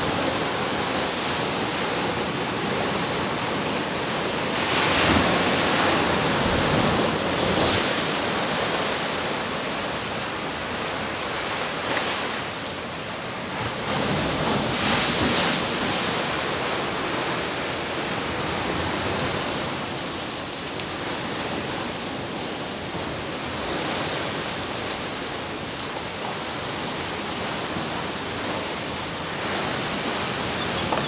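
Ocean surf breaking on a shallow reef: a steady wash of waves that swells louder twice, about five to eight seconds in and again about fourteen to sixteen seconds in.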